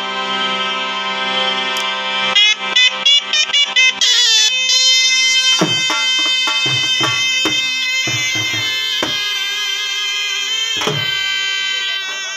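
Shehnais playing a traditional melody over a harmonium drone: long held notes at first, then quick ornamented runs from about two seconds in. Low percussive thumps come in around the middle.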